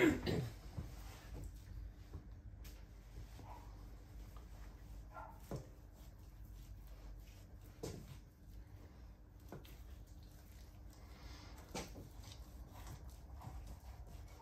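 A cough right at the start, then a faint steady hum and a few soft knocks and clicks as a knife slices steaks from a piece of beef rump on a wooden chopping block.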